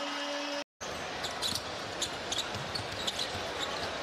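Arena crowd noise with a steady held tone, broken off abruptly by an edit cut about two-thirds of a second in. After it comes live NBA game sound: a basketball dribbling on the hardwood court, short high squeaks of sneakers and a crowd murmur.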